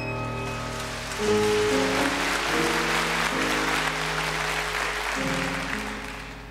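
Audience applauding over slow, held keyboard chords that open a gospel song. The applause fades near the end.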